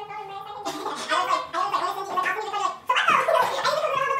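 A high-pitched voice vocalising continuously without clear words, getting louder about three seconds in.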